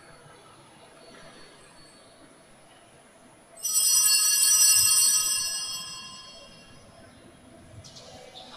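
Quiet room tone, then about three and a half seconds in a sudden bell-like ringing of several high steady tones. It holds for about a second and a half, then fades away over the next two seconds.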